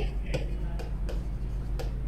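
Stylus tapping and ticking against an interactive display screen while handwriting: a few light, sharp ticks over a steady low hum.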